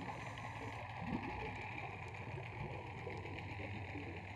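Steady muffled underwater noise heard through a diving camera's housing: a low hum with a hiss above it, and a small blip about a second in.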